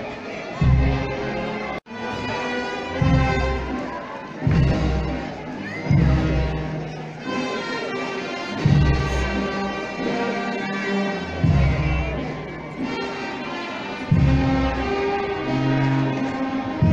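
Brass band playing a slow march, with held brass notes over a bass drum beat about every second and a half; the sound drops out for a moment about two seconds in.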